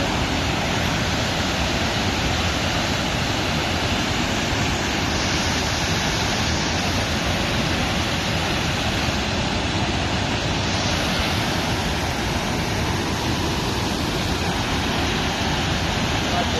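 Water overflowing a dam, rushing loudly and steadily with a very strong flow.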